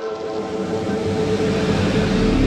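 Intro whoosh sound effect: a rushing noise that swells steadily louder, with a low rumble building under it, over sustained synth pad tones.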